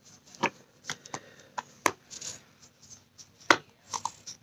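Irregular light knocks and clicks of makeup being handled: compacts, palette and brushes picked up, tapped and set down, about eight in all, with the sharpest about three and a half seconds in.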